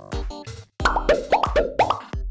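Electronic background music with a steady beat, and about a second in a quick run of five or six short rising 'bloop' sound effects laid over it.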